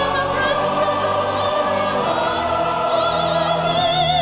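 Robed church choir singing a gospel anthem, holding long notes, with a bright top voice wavering in a wide vibrato above the chord.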